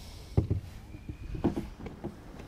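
Two clusters of dull knocks about a second apart, from gear or feet moving in a small fishing boat.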